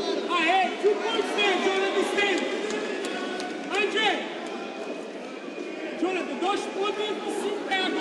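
Men's voices shouting and calling out over one another, with crowd noise beneath.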